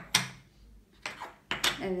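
Wooden game discs knocking on a wooden tabletop as they are flipped and set down: one sharp knock just after the start and a couple more about one and a half seconds in.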